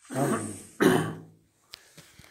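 Two short vocal sounds from a person, each about half a second, the second the louder.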